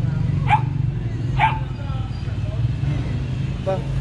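A dog barking twice, two short high yips about a second apart, over a steady low hum.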